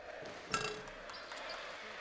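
A basketball strikes the metal hoop rim on a free-throw attempt about half a second in: a sharp clang with a brief ring.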